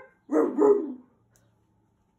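A pet dog barking twice in quick succession, one short pitched call in two parts lasting under a second, just after the start, given as a 'roar' in answer to the word 'dinosaur'.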